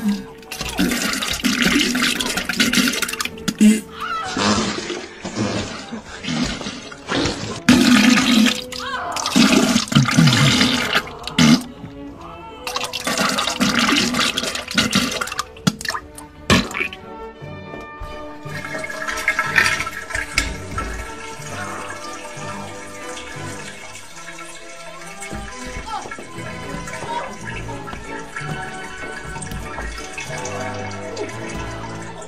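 Toilet flushing in loud bursts of rushing water, broken by a woman's vocal sounds, through roughly the first half. From about halfway in, music with steady held notes takes over.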